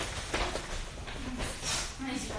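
Quiet footsteps and shuffling of sneakers on a hard studio floor, with a short hiss near the end.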